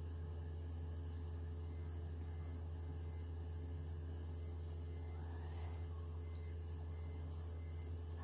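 Steady low hum with several faint pitched overtones, unchanging throughout, with a brief faint rustle about halfway through; no grinding is heard.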